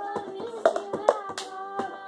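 Hand claps and cup taps of the cup-game routine, sharp strokes about every half second, over a sung melody.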